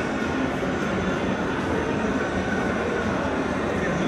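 Steady background din of a large exhibition hall: a continuous rumbling wash of crowd noise and ventilation, with no single event standing out.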